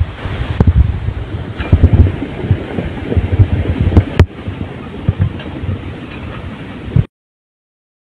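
Flash-flood torrent from a cloudburst rushing down a street, a loud steady rush with wind buffeting the phone microphone and a few sharp knocks; it cuts off suddenly about seven seconds in.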